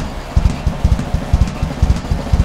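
Rock drum kit played in a rock instrumental: a quick run of low bass-drum strokes, about six a second, over faint sustained backing tones.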